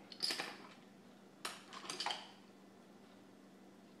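Plastic gum-paste modelling tools being handled and set down on a stone countertop: several light knocks and clicks in the first two seconds.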